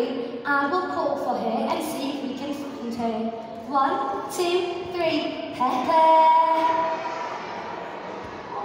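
A woman's voice through loudspeakers, talking in a lively, sing-song way, with one long drawn-out vocal note about six seconds in.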